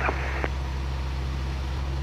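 Jodel DR1050 light aircraft's piston engine droning steadily in cruise, heard inside the cockpit.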